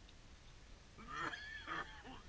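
A bird's loud honking call about a second in, a single call lasting nearly a second with a falling end.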